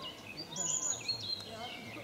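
Small songbirds chirping and trilling in short high notes, over a steady outdoor background hum.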